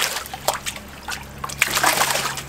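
Wood-framed diamond-sifting screen tapped out in a tub of water: the water splashes with each tap, then sloshes and trickles. There are sharp splashes near the start, about half a second in and again near the end, with quieter sloshing between. This is the tap-out stage of wet screening, which settles the heavy gravel and any diamonds into the centre of the screen.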